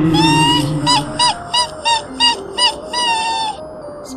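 A shrill, high-pitched ghostly laugh from a cartoon kuntilanak: one long note, then a run of about seven short "hi" notes, then a long note again, over background music.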